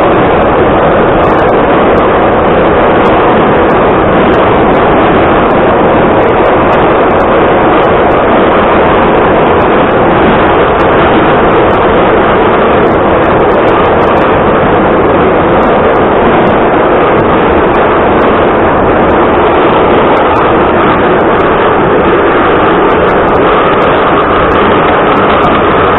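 Ezh3 metro car running in a tunnel: a loud, steady rumble and roar of wheels and running gear. A faint steady whine joins in near the end.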